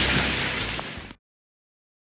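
Heavy rain pouring down, heard close on a handheld camera, with a low rumble on the microphone. The sound cuts off abruptly a little over a second in, leaving silence.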